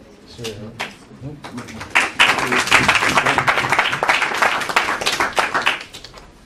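Audience applauding, starting about two seconds in and stopping just before the end, after a few low voices.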